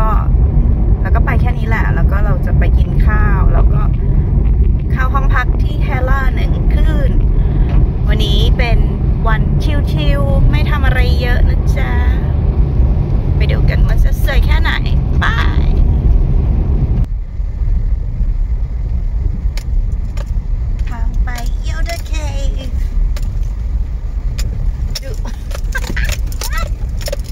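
Road and engine rumble inside a moving car's cabin, steady and loud, with voices talking over it. About 17 s in, it cuts abruptly to a quieter, thinner rumble.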